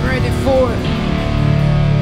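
Alternative rock band playing live: electric guitar and bass holding sustained low notes and chords with drums, while a melodic line bends up and down above them several times.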